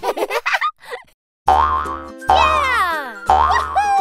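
A brief burst of cartoon giggling, then a short silence. About a second and a half in, bouncy children's music starts, with cartoon boing effects whose pitch slides down, each one marking a bounce of a pogo stick.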